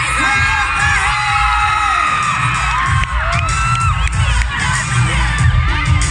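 Concert audience cheering and screaming, many high-pitched shrieks and whoops overlapping, with a heavy low rumble underneath.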